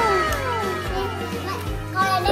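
Background music with a child's voice, one long call falling in pitch during the first second.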